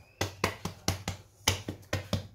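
Hands patting and pressing out a round of whole-wheat bread dough on a stone countertop: about eight quick, uneven slaps.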